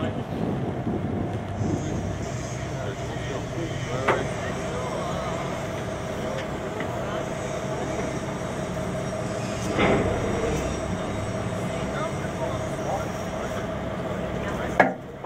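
A boat's engine idling with a steady hum, with two short knocks, one about four seconds in and one near ten seconds.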